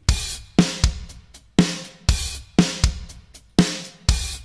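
A programmed pop drum beat on the Addictive Drums 2 virtual acoustic kit, playing in a loop: kick, snare and hi-hat/cymbal hits in a steady 4/4 pattern at 120 BPM, the basic pop groove.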